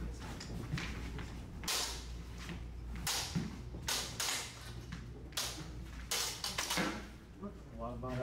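LED lightsaber blades swinging and striking in a fencing bout: a quick, irregular series of sharp swishes and clacks, about ten in all and echoing in a large hall, thinning out near the end.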